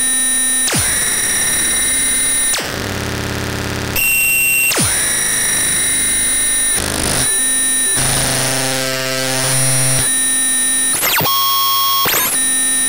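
Loud, harsh electronic music of distorted synthesizer noise and held high tones, cutting abruptly from one section to the next every second or two, with quick pitch sweeps, falling about a second in and rising then falling near the end.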